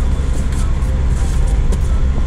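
Steady engine and road noise inside the cab of a moving truck, a low rumble under an even hiss.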